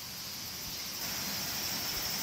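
Steady, high-pitched chorus of insects over a faint even hiss, growing a little louder about a second in.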